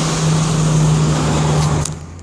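Steady engine drone with a strong low hum, ending with a couple of clicks and a drop in level near the end.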